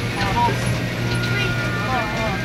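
Passenger van driving along a road, heard from inside the cabin: a steady low engine and road hum.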